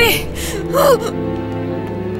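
A woman gasping and whimpering in distress, two short cries in the first second, over background music. The music then goes on alone as steady held tones.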